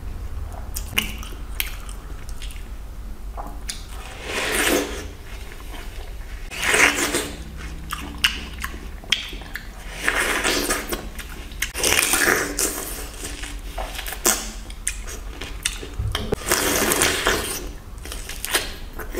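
Person biting into and chewing a wedge of watermelon close to the microphone, in loud bursts every two or three seconds.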